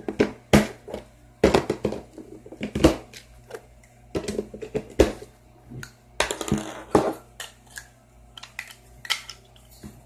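Plastic craft pieces and small containers handled and set down on a hard tabletop: a string of irregular clicks and knocks, with a short rustling scrape about six seconds in.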